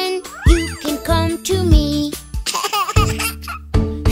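A children's song: a child's voice singing over upbeat backing music with a steady beat, with a quick rising-and-falling glide about half a second in.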